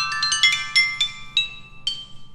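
Chinese stone chimes (qing) struck in a quick melodic run, about ten notes, each ringing on after the strike, the notes spreading out and slowing toward the end.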